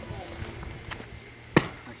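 Feet taking off and landing on a paved path in a standing backflip: a light tap about a second in, then one sharp thud of the landing about one and a half seconds in.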